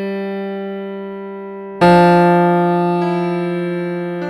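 A synthesized piano in Synthesia playback plays slow single notes in the bass: a G rings and fades, then an F is struck about two seconds in and rings on, fading.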